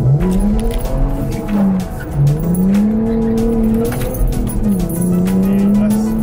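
Lexus IS300's 3.0-litre inline-six with an aftermarket exhaust, heard from inside the cabin, pulling hard uphill. The revs climb, fall back twice at gear changes and climb again.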